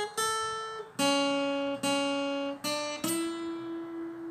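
Steel-string acoustic guitar picking a slow single-note melody, one note at a time. A high note on the first string is followed by the same lower note twice on the second string, then two notes stepping up on that string (frets 2, 2, 3, 5). The last note is left ringing.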